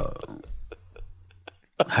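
A man's low, drawn-out throaty vocal sound trailing off and falling in pitch, followed by a few faint clicks.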